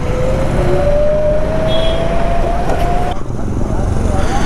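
Electric scooter's motor whine rising steadily in pitch as it accelerates, stopping about three seconds in. Under it runs a loud, steady rumble of wind and road noise.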